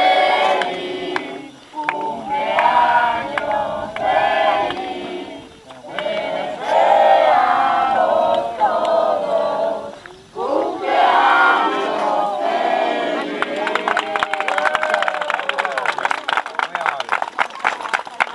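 A crowd of children's voices shouting and chanting together in repeated bursts with short pauses between them. Over the last few seconds a rapid run of clicks or crackles sounds under the voices.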